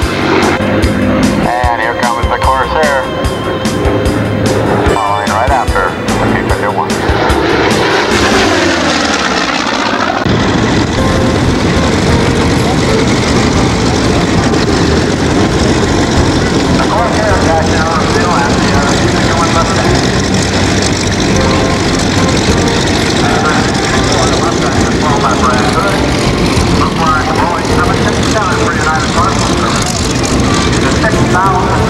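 A propeller-driven World War II warbird's piston engine heard passing by in flight, its pitch falling as it goes. After an abrupt change at about ten seconds, a steady mechanical noise with voices runs on.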